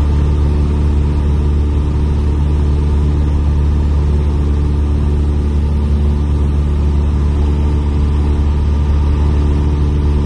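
Piper PA-28-160 Cherokee's four-cylinder Lycoming O-320 engine and propeller droning steadily in flight, heard from inside the cabin, with an even, deep, unchanging pitch.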